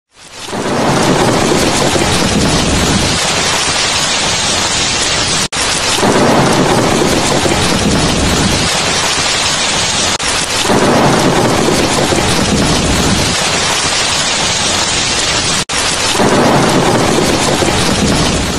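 A thunderstorm sound effect: steady heavy rain with four long rolls of thunder about five seconds apart. The sound drops out for a split second twice.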